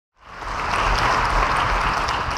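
Concert-hall audience applauding, fading in from silence within the first half second and then holding steady.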